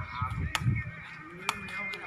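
A sepak takraw ball being struck: two sharp knocks about a second apart, with voices of onlookers calling out around them.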